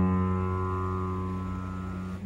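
An upright piano chord ringing out after being struck, its notes held and fading steadily.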